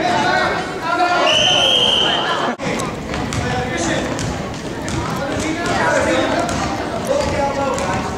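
Youth basketball game in a gym: a basketball bouncing on the hardwood court amid indistinct voices of players and spectators. About a second and a half in, a steady whistle blast lasting just over a second, typical of a referee's whistle.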